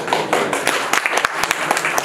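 Audience applauding: many hands clapping together in a dense, continuous patter.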